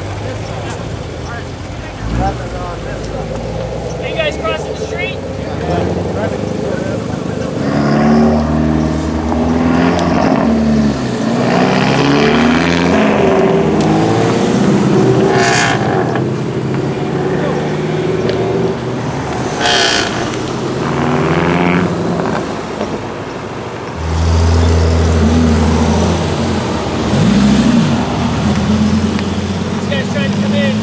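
A procession of sports cars pulling away one after another, among them a Chevrolet Corvette, a Ford Mustang and a Lamborghini Gallardo, their engines revving and accelerating past.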